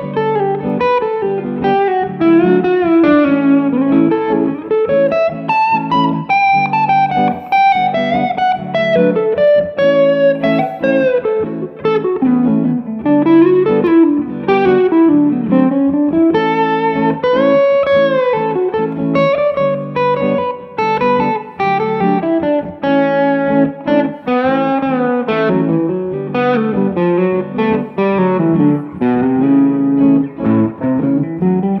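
Electric guitar lead improvising in A Mixolydian over a looped A–G–D–A (one, flat seven, four) chord progression. The single-note line has frequent string bends, with the chords sustaining underneath.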